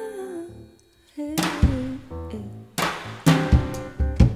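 A live jazz trio playing an instrumental passage: sustained pitched notes under a drum kit that strikes several loud accented drum-and-cymbal hits, the first about a second and a half in and two close together near three seconds.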